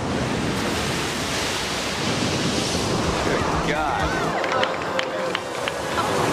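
Large ocean waves breaking, a steady dense wash of surf noise. In the second half, a voice and a faint held tone come in over the surf.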